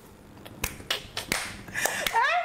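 Fingers snapping, about five sharp snaps in quick succession.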